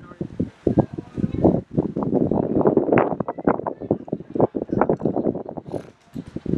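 Wind buffeting the camera microphone, an uneven rumble that keeps swelling and dropping.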